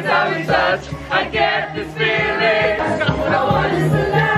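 A group of voices singing loudly together over music.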